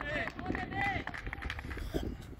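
Players' voices calling out to one another across the pitch in short, raised shouts, with a few short knocks and a sharper knock near the end.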